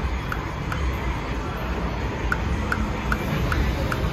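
Jinse Dao video slot machine spinning its reels, with short electronic ticks about two and a half a second that pause briefly midway, over a steady casino background hum and murmur.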